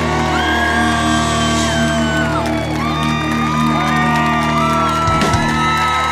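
Live country-rock band holding out the song's closing chord: steady sustained low notes under electric guitars bending and sliding notes above.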